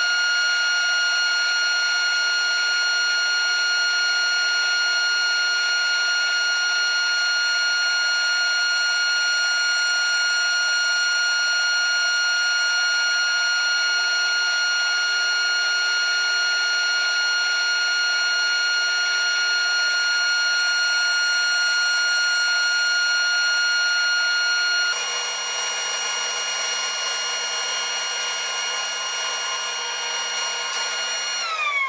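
Band saw and dust-extraction shop vacuum running with a steady high-pitched whine while the saw slices slabs from a log. The sound drops a little in level about five seconds before the end.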